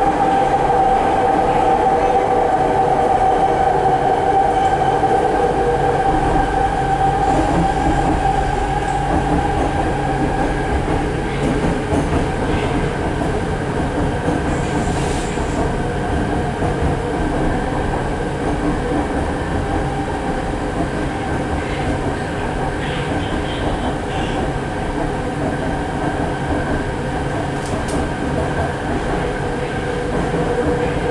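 Inside a rapidKL ART Mark III metro car running along the line: a steady rumble of the car on the track, with the traction drive's whine falling a little in pitch over the first few seconds and then holding steady.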